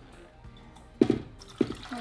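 Water poured from a plastic blender jar splashing into a small stainless-steel saucepan of tomatillos and dried chiles, in two sudden gushes a little over half a second apart, about halfway through.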